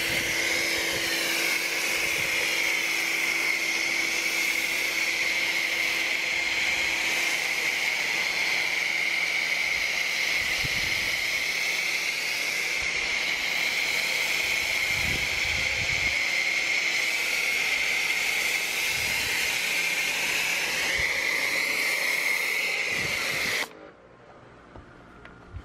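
Foam cannon on a Sun Joe electric pressure washer spraying thick soap foam, a loud, steady hiss of spray. It cuts off suddenly just before the end as the trigger is released.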